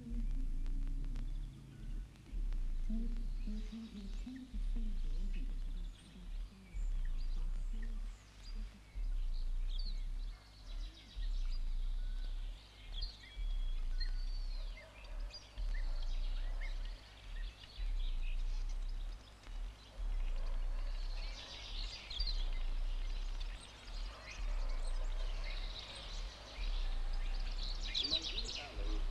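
Faint bird chirps, busier near the end, over a steady low hum.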